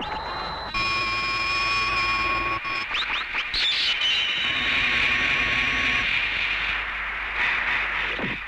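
Synthesised transformation sound effects: a held, high electronic tone, then quick rising sweeps about three seconds in and a second held shimmering tone, over a steady hiss.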